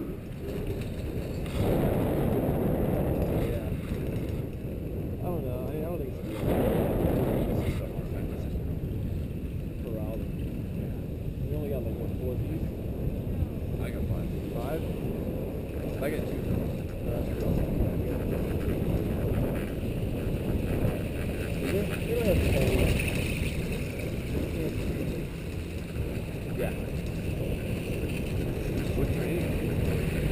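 Steady low rumble of wind buffeting the action camera on a moving chairlift, with muffled, indistinct voices of the riders coming through now and then.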